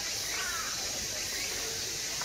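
Outdoor ambience: scattered short bird chirps over a steady, high-pitched hiss.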